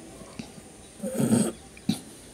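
A single short muttered word about a second in, then one sharp click just before the end, over faint steady hiss.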